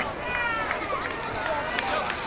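Children's voices calling and chattering in the distance, fairly high-pitched, with no words that can be made out.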